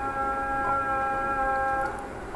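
A steady hum at one unchanging pitch with overtones, lasting about two seconds and stopping just before the end.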